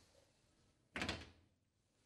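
Switchboard cabinet door unlatched and opened, with one short clunk about a second in.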